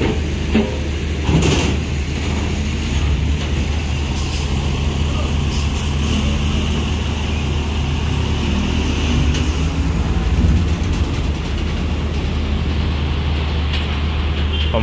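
Diesel engine of a Mercedes-Benz OH 1526 coach running at low revs, a steady low drone, as the coach rolls slowly past and pulls up a ferry's loading ramp.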